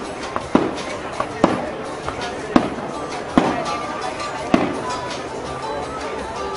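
Aerial fireworks shells bursting in an irregular series of sharp bangs, about five main ones, the loudest about two and a half seconds in, some trailing off into a short rumbling echo.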